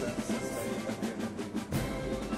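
Band music with a steady drum beat.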